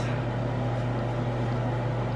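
Steady low background hum with a faint even hiss, unchanging throughout.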